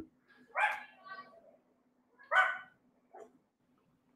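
A dog barking in the background, two main barks about two seconds apart with fainter yips between them.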